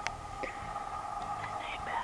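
Soft whispering, in short hushed bits, over a steady two-tone hum, with a few faint clicks.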